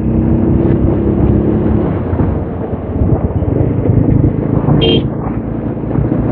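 TVS Apache motorcycle engine running at road speed under heavy wind rush on the helmet mic. A short horn beep sounds about five seconds in.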